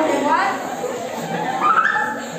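Children's voices heard over a handheld microphone, high-pitched, with rising voice sounds about half a second in and again near the end.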